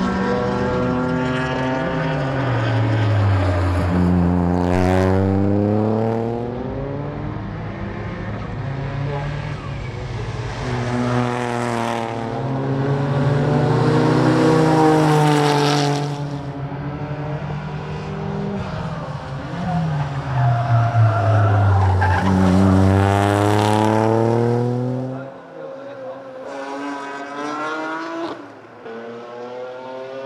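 Toyota GR Yaris's 1.6-litre turbocharged three-cylinder engine being driven hard around a circuit, heard from trackside. Its pitch climbs in long pulls under acceleration and drops steeply as the car slows for corners, several times over. Near the end it becomes much quieter.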